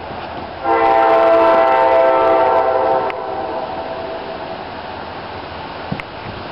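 A train horn sounding one long multi-tone blast of about two and a half seconds, starting just under a second in, over a steady background noise.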